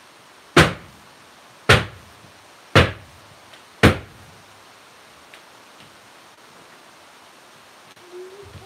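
A wooden loaf mold full of freshly poured soap batter banged down four times, about a second apart. This tapping settles the batter and knocks out trapped air bubbles.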